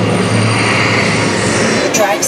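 Test Track ride vehicle running along its track through the dark show tunnel, a steady loud noise with a low hum underneath.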